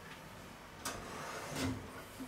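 Metal oven rack carrying a clay Römertopf being slid along its runners, with a scraping rub and two knocks: a sharp one a little under a second in and a heavier one near the end.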